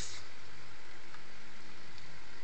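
Steady background hiss with a low hum under it, and a faint click about a second in.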